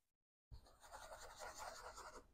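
Faint scrubbing of a soft-bristled detailing brush on a plastic car door panel, starting about half a second in: a light, scratchy rubbing.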